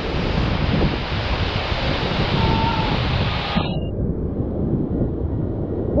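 Steady hiss of a flooded river rapid rushing over rock ledges, with wind rumbling on the microphone. About three and a half seconds in, the hiss drops away suddenly, leaving mostly a low rumble.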